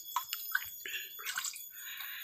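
Spring water trickling into a shallow rocky pool, with a run of small, irregular gurgles and plinks.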